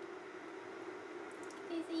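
Steady low background hum, with a few faint clicks about one and a half seconds in, then a person starting to speak near the end.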